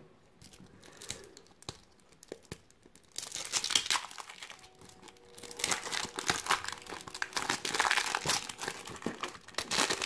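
Plastic wrapper of a 1993 Fleer football card pack being torn open and crinkled by hand: a few faint clicks at first, then a crackling burst about three seconds in and steady loud crinkling through the second half.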